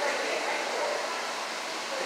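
Steady hiss of an aquarium gallery's background noise, with a faint distant voice of another visitor at the start.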